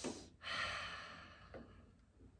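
A man sighing: a breathy exhale about half a second in that fades away over about a second. He is exasperated.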